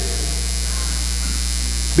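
Steady low electrical mains hum with a faint hiss, from the recording or sound system.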